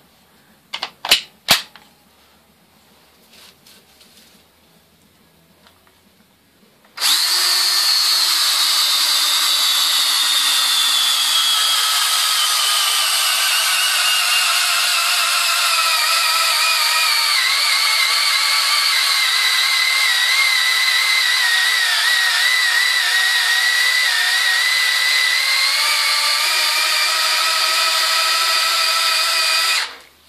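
A couple of clicks about a second in, as a 12 V DeWalt XRP battery pack is latched into a cordless drill. About seven seconds in the drill starts boring into a birch log and runs under load for over twenty seconds, its whine falling steadily in pitch as the motor slows, then cuts off suddenly. The pack is being tested under load and, rebuilt with Chinese sub-C cells, couldn't make it through the log.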